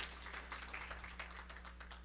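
Quiet room tone with a steady low electrical hum and a few faint ticks.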